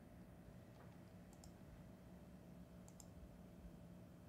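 Near silence with faint computer mouse clicks: a pair about a second and a half in and another pair near three seconds.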